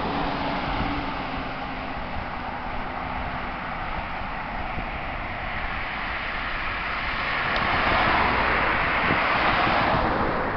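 Road traffic noise, a steady hiss that swells as a vehicle passes near the end.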